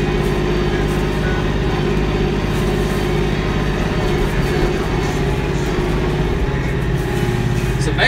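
Kioti 5310 compact tractor's diesel engine running steadily under way as the tractor drives along.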